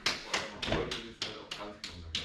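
A rapid, even run of sharp taps, about four a second, each with a short ring in a small room, with a little voice between them.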